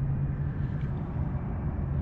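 A steady low hum over an even outdoor rumble, with no distinct events.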